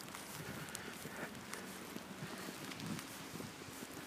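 Faint footsteps in deep snow, with soft, irregular crunches and ticks.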